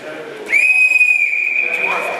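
A referee's whistle: one long blast, starting about half a second in, loudest at first and then held more quietly. It stops the action on the mat.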